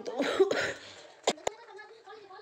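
A woman coughs, a short harsh burst, from a cough she says she still has. It is followed by two sharp clicks.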